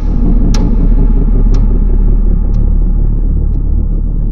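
A loud, deep rumble of intro sound design that starts suddenly. A sharp tick comes once a second, each one fainter than the last.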